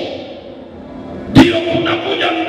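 A man's voice amplified through a handheld microphone and hall PA: a short lull, then a sudden loud shout about a second and a half in, running on into speech.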